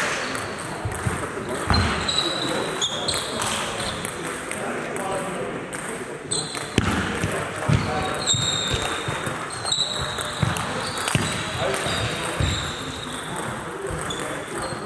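Table tennis balls clicking off tables and bats in a large sports hall, with squeaking shoes on the hall floor and a murmur of voices throughout.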